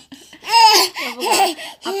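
A one-year-old toddler laughing gleefully in a few loud, high-pitched peals, starting about half a second in.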